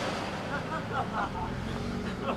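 A minivan driving slowly past at very close range, its engine giving a low steady hum that fades a little as it goes by.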